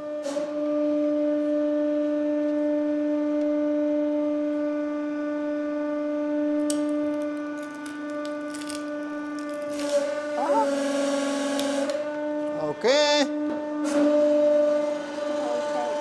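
Hydraulic press running with its steady pump hum as the ram comes down onto wood pieces in a steel cylinder and compresses them. In the second half a few sharp cracks and squeaky creaks come from the wood under load.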